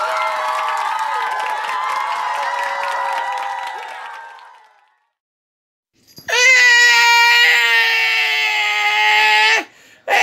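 A man's voice giving two long, high-pitched screams. The first fades out after about four seconds; the second follows a second of silence, is louder, and cuts off sharply near the end.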